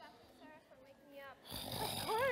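A man's mock snoring: a loud rasping snore starting about one and a half seconds in, running into a voiced snort that rises and falls in pitch. Quieter voice sounds come before it.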